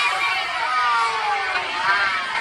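A crowd of onlookers cheering and calling out over a babble of voices, with long drawn-out whoops that fall in pitch through the middle and rise again near the end.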